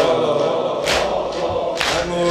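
A congregation of mourners sings a Persian elegy together. A sharp slap about once a second keeps time with it.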